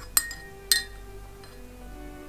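A metal spoon clinking against the inside of a mug of dark drink while stirring: two sharp ringing clinks about half a second apart, the second a little after half a second in.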